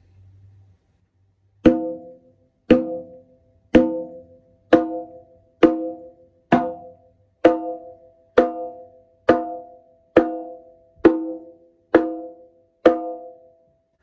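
A conga drum struck with one open hand, thirteen single strokes about a second apart. The fingers gradually curl so the fingertips rather than the finger pads strike the head, and the pitch climbs from the open tone toward the higher open slap.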